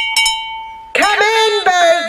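Hand bell rung a few quick times, its ring held until it cuts off sharply about halfway through: the boat-hire bell calling time on the boats.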